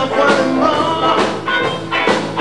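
Live rock band playing loudly: electric guitar chords over drums, with a drum stroke about once a second.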